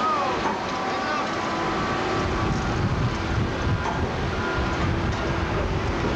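Diesel engines of heavy earthmoving machinery (loaders and an excavator) running, a continuous rumble that grows stronger about two seconds in, with wind on the microphone and faint distant voices.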